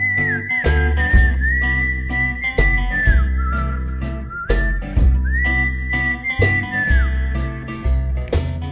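Instrumental song intro: a whistled melody that slides between notes, over a bass line and a steady drum beat.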